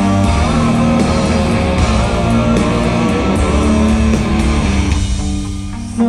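Live rock band playing loud, electric guitar to the fore over bass guitar and drums, as recorded from the audience in an arena. Near the end the sound thins and drops a little in level.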